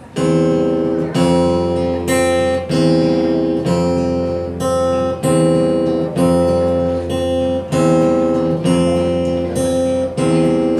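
Acoustic guitar strummed in a steady rhythm, the same chords ringing and re-struck about once a second, as the instrumental intro to a song.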